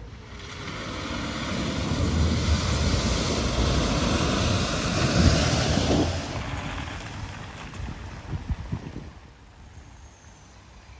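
A car driving through deep, flowing floodwater, the water rushing and spraying around it. The rush builds to its loudest about five seconds in and fades over the last few seconds, with a few short splashes or knocks near the end.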